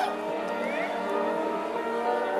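Live rock band playing a slow, sustained passage: held notes ring on while a higher line slides up and down in pitch bends.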